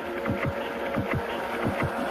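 Throbbing low pulses, each a quick drop in pitch, coming in pairs like a heartbeat about two to three times a second, over a steady hum.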